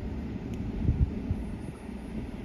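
Wind buffeting the microphone outdoors, an irregular low rumble.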